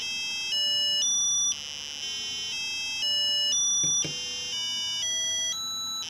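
Small speaker driven by an Arduino playing buzzy electronic square-wave tones: one note stepping up an octave about every half second through five octaves, then dropping back to the lowest and starting over, about two and a half times. The octave steps are made by a timer interrupt doubling the note's frequency.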